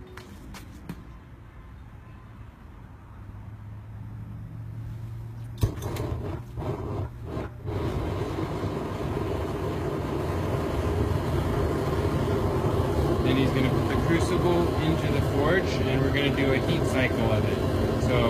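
Propane venturi burner firing into a small homemade furnace, its roar growing steadily louder as the gas regulator is turned up, with a sharp click about five and a half seconds in.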